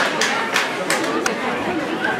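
Chatter and calls of several voices on and around a football pitch, with a few short sharp clap-like sounds about a third of a second apart.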